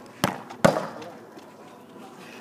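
A football kicked hard in a penalty, then about half a second later a louder bang that rings on briefly as the ball hits something hard.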